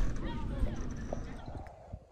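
Faint voices in the background with a few soft knocks, dying away near the end.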